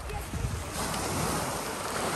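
Sea surf washing onto the shore, a steady hiss that swells about a second in, with wind rumbling on the microphone.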